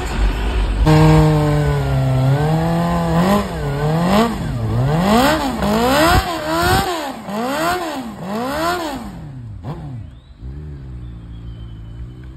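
Sport motorcycle engine revved hard during a burnout, the revs swinging up and down about once a second while the rear tyre spins on the spot. Near the end the revs fall away and it runs at a low, steadier note.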